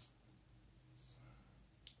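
Near silence: room tone with faint handling of yarn and metal needles, and a single faint click near the end.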